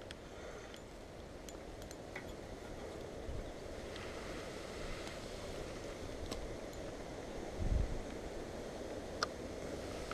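Wind on the microphone and long grass rustling, with a few faint clicks and one dull low thump about three-quarters of the way through.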